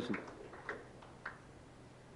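Quiet function-room tone with a steady low hum, broken by two faint short clicks about half a second apart.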